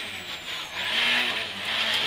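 Rally car engine heard from inside the cockpit, its pitch dipping and rising again as it slows for and powers through a tight right-hand bend, over steady road and cabin noise.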